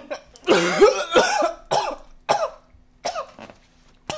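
A man coughing in a run of about five rough, voiced bursts, the longest and loudest about half a second in.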